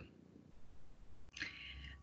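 A quiet pause in video-call speech, with a faint breathy sound near the end: a person drawing breath before speaking.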